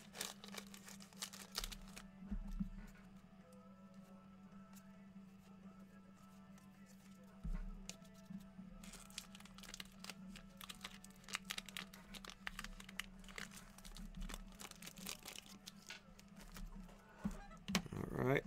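Foil trading-card pack wrappers crinkling and tearing and cards being handled, a quiet run of short crackles that grows busier about halfway through. Faint background music and a steady low hum sit beneath.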